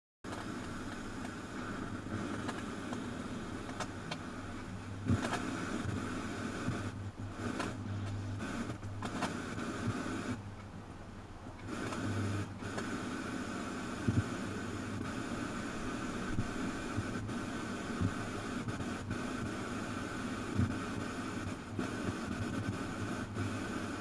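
Steady electrical hum and hiss, with a faint whine band and a few soft clicks, from ultrasonic test equipment running.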